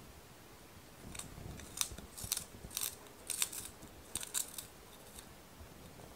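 A Derwent Lightfast coloured pencil being twisted in a Jakar Trio hand-held sharpener. The blade shaves the wood in a run of short, irregular scraping strokes, starting about a second in and stopping about five seconds in.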